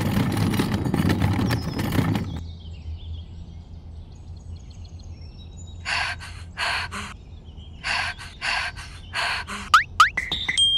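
A dense rumbling noise fades out about two seconds in, leaving a faint low hum. From about six seconds comes a string of about ten short, squeaky cartoon sound effects in quick groups, ending in a quick rising whistle.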